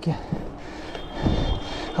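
Mountain bike rolling over cobblestone paving: a steady rough rumble with wind hiss, and a single knock about a second in. A thin, steady high squeal starts about a second in and runs on.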